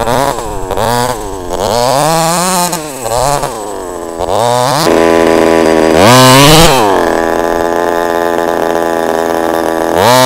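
HPI Baja SS 1/5-scale RC buggy's 26cc two-stroke petrol engine, revving up and down over and over for the first five seconds. It gives its loudest rev about six seconds in, then runs at a steady pitch, idling, for the last few seconds.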